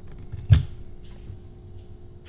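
A single dull thud about half a second in: a piece of cooked chicken dropped into a plastic blender cup standing on a kitchen scale.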